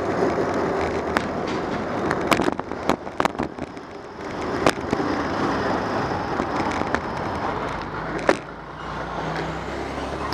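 Wind and tyre noise picked up by a bicycle-mounted camera while riding. A run of sharp knocks and rattles comes a couple of seconds in, and one more loud knock near the end, as the bike jolts over bumps.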